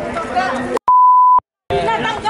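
An edited-in censor bleep: a single steady high-pitched beep, about half a second long, dropped into shouted speech about a second in, with the audio cut to dead silence just before and after it to mask a word.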